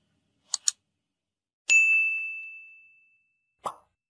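Sound effects for an animated subscribe button: a quick double mouse click about half a second in, then a single high bell ding that rings out over about a second and a half, and a short pop near the end.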